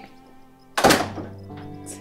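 Background music with a single loud thud about a second in, dying away over a fraction of a second.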